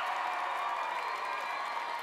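Sitcom laugh track: a crowd laughing and cheering, steady throughout.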